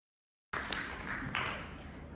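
Silence, then about half a second in a recording made in a hall cuts in abruptly. Two sharp taps, each with a short burst of hiss, are followed by low room noise.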